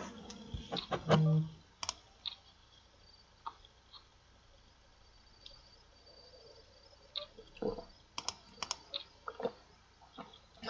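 Sparse sharp clicks at a computer during online poker play: a cluster in the first two seconds, a few single ones in the middle, and another cluster in the last three seconds. A short low hum comes about a second in.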